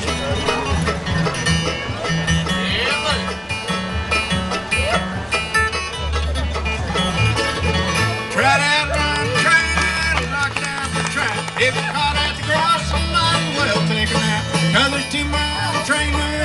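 Live bluegrass band playing an instrumental break: a banjo picking over a strummed acoustic guitar, with an upright bass walking steadily underneath.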